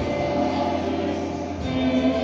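Music with voices singing together, sustained held notes.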